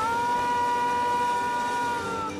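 Blues harmonica holding one long, steady two-note chord over quiet backing music.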